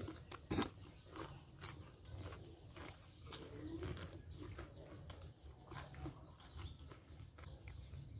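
Faint mouth sounds of eating: crunchy chewing and lip smacks on fresh cucumber, with scattered small clicks, the sharpest about half a second in.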